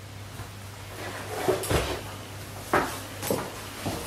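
A few soft knocks and bumps, the first about halfway through and two more near the end, over a steady low electrical hum.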